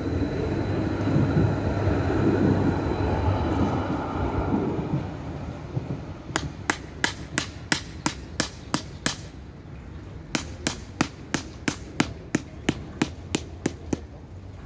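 A passing tram rumbles and fades over the first five seconds. Then come sharp hammer taps on the wooden tree stake, about three a second, in two runs of around ten strokes with a short pause between.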